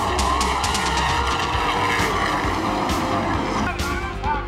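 Stock car engines running at speed past the grandstand, with music underneath; near the end the engine noise falls away and the music carries on.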